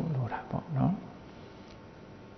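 A man's voice trails off in a few short, drawn-out syllables that glide down and up in pitch during the first second, followed by a pause with only faint room hum.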